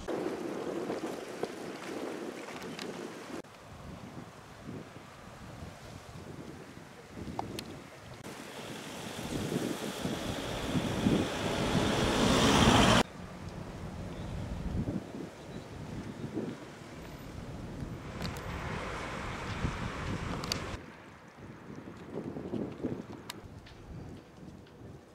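Wind rushing over the microphone with outdoor noise. The noise changes abruptly several times, swells for a few seconds and breaks off sharply about halfway through.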